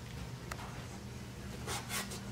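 Faint rubbing of a cloth rag on a metal hubcap, over a steady low hum, with a tiny click about half a second in.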